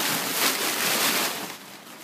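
Crumpled packing paper rustling and crinkling loudly as a dog burrows in it inside a cardboard box, easing off after about a second and a half.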